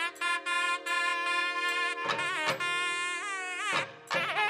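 Nadhaswaram playing a long held note that breaks into quick sliding ornaments near the end. Thavil strokes fall at intervals, and a steady drone runs beneath.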